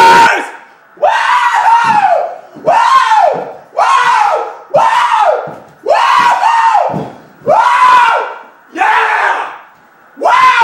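A man yelling in jubilation: a string of about eight long wordless screams, roughly one a second, each rising and then falling in pitch.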